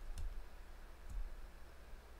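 Computer mouse clicking twice, about a second apart, as shapes are placed in a drawing program, faint over a low steady hum.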